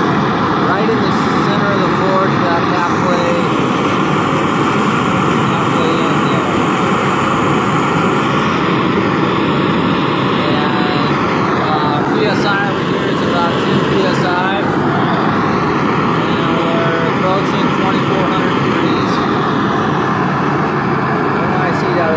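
The gas burner of a small firebrick forge running steadily at 10 psi gas pressure, a loud, even noise of gas and flame that does not change, within minutes of being lit.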